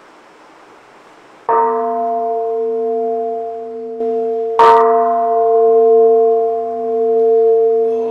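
Large bronze temple bowl bell (kin) struck twice, about three seconds apart, the second strike louder, each ringing on with a steady low hum. It is the signal that opens the sutra chanting.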